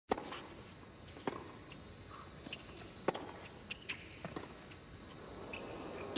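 Tennis rally on a hard court: sharp pops of racquets striking the ball and the ball bouncing, roughly one to two seconds apart, with a few short squeaks between them. The pops stop about a second before the end.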